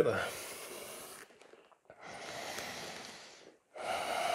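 A person breathing deeply and audibly: a breath fading out about a second in, a second long breath from about two to three and a half seconds, and a third beginning near the end.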